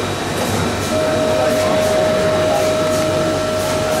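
Busy exhibition-hall din, a dense wash of crowd noise and machinery, with a steady high whine that comes in about a second in and holds.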